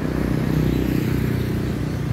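A motorcycle riding past on the street, its engine running steadily over the hum of other road traffic.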